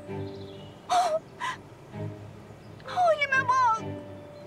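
A woman's high, wordless whimpering: a short cry about a second in, then a longer, wavering one near the end, over background music.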